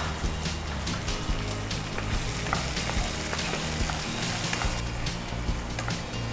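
Onions and capsicum frying in a nonstick kadai, sizzling steadily as they are stirred. A spatula scrapes and clicks against the pan.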